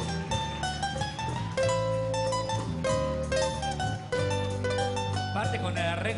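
Acoustic lead guitar picking a bolero introduction, one note at a time, over a steady bass and a guitar accompaniment.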